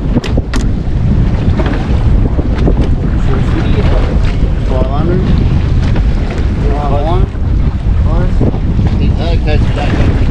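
Wind buffeting the microphone, a loud steady rumble. A few short wavering tones come through in the second half.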